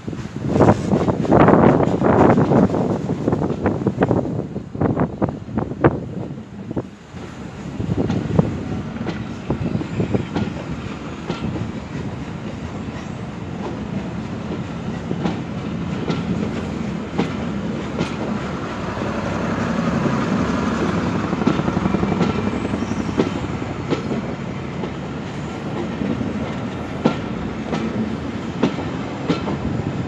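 Passenger coaches of a train rolling past close by, with a steady rumble and wheels clicking over the rail joints. The first several seconds are louder, with gusty rushing bursts, before it settles into a steadier run of clicks and rumble.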